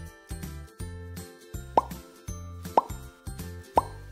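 Three short rising plop sound effects, about a second apart, counting down over light background music.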